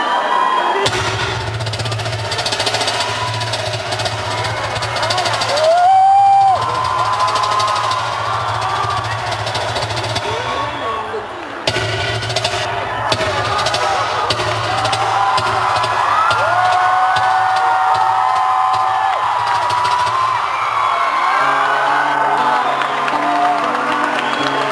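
Live concert music through a big PA: a steady low drone with an audience screaming and cheering over it, one scream loud and close for about a second. Near the end a low line of stepping notes begins.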